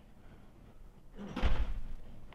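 A single dull, heavy thump about one and a half seconds in, after a quiet first second.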